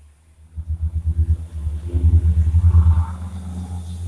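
A motor vehicle's engine rumbling, likely passing nearby. It swells up about half a second in, is loudest around two to three seconds, then fades.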